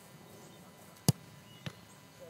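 A soccer ball struck hard by a kick, a single sharp thump about a second in. About half a second later comes a fainter hit as the goalkeeper stops the shot.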